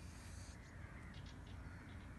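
Faint lakeside ambience: several short bird calls in quick succession over a low, steady rumble.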